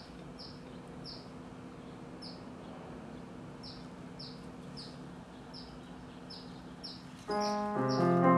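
A small bird chirping outside, short falling chirps repeated irregularly about once or twice a second, over a steady faint background hum. Piano music comes in near the end.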